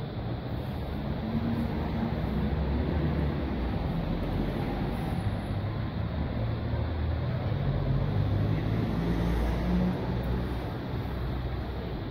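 City street noise: a steady low rumble of traffic that swells over the first couple of seconds and eases a little near the end.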